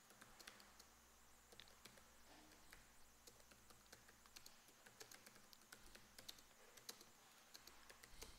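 Faint typing on a computer keyboard: irregular, quick key clicks.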